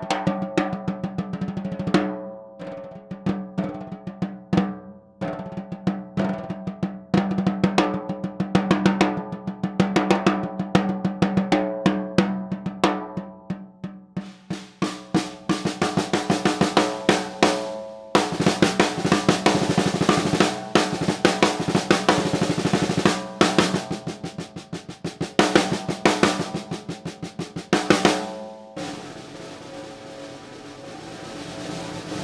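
TAMA Superstar Classic 6.5x14-inch maple snare drum played with sticks in rolls and strokes. At first the snare wires are off and the head rings with clear pitched tones. About fifteen seconds in the wires are switched on and the drum takes on a crisp, rattling snare buzz, and the playing stops shortly before the end, leaving the drum ringing.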